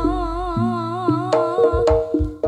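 Live dangdut band music: a female singer holds one long note with a strong, wavering vibrato over a held bass and keyboard, and the drums come back in with a few sharp strokes about a second and a half in.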